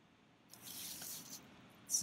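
A brief, soft swishing noise of about a second from handling a plastic container of red oxide wash and the brush standing in it, starting about half a second in.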